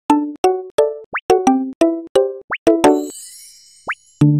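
Cartoon pop sound effects: a quick run of about nine short, pitched pops, roughly three a second, with three brief upward swoops among them. A shimmering sparkle chime fades away after the last pop.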